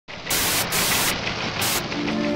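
Static hiss, a digital-glitch sound effect, surging louder three times in short bursts.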